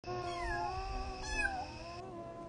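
A young kitten meowing: two short, high calls, the second starting a little past the middle and louder.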